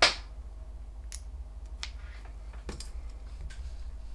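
One sharp click at the start, then a few faint, scattered clicks and taps of hands handling a phone, cable and stylus on a desk.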